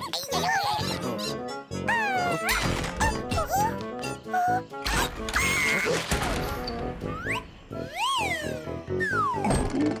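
Cartoon soundtrack: background music with high, wordless character squeaks and calls that glide up and down in pitch several times, and a few knocks.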